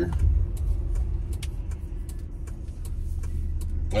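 Road and engine noise inside a moving vehicle's cabin, a steady low rumble, with a turn-signal clicker ticking evenly about two or three times a second.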